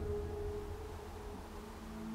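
A single sustained tone from the film's background score, fading away about two-thirds of the way in over a faint low hum.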